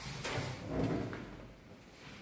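Automatic sliding lift doors moving: a short knock just after the start, then a rumbling slide that peaks near the one-second mark and fades away.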